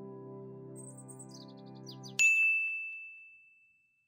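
A held musical chord with a few short, high, falling chirps over it, cut off about two seconds in by a single bright ding that rings on one tone and fades away.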